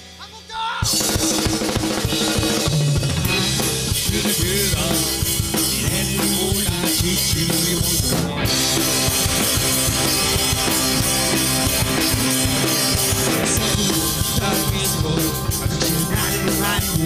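A live punk-rock band kicks in about a second in after a short pause, with drum kit, electric guitars and bass guitar playing loud and steady. The top end drops out briefly just past the middle.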